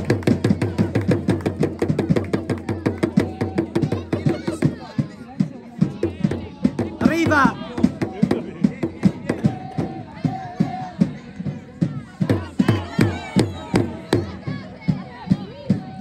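Supporters chanting together over a fast, even rhythmic beat, with a higher shout about seven seconds in.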